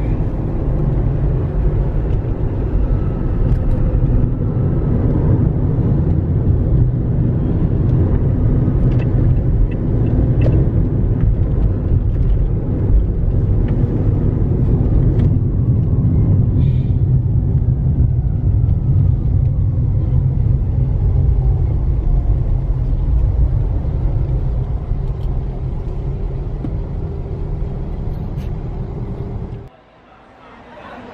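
Steady rumble of a car's engine and tyres on the road, heard from inside the cabin. It cuts off abruptly near the end.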